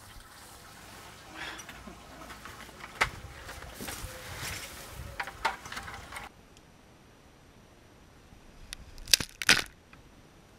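Compost being dumped out of plastic buckets onto a pile: rustling, pouring soil with scattered knocks of the bucket. Near the end come two sharp knocks close together, the loudest sounds.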